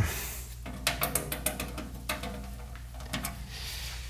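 Handling noise from a heavy metal-cased antique tube-type electronic device being tilted and shifted: a run of light clicks and knocks lasting about three seconds, over a steady low hum.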